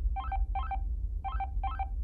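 Electronic device beeps: four short bleeps in two pairs, each a quick run of stepped tones, over a steady low rumble.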